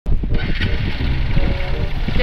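Vehicle on the move: a steady, heavy low rumble of engine and road noise.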